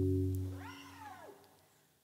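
The last chord on an electric guitar rings out and fades away in the first second. Partway through the fade comes a short, faint call that rises and then falls in pitch.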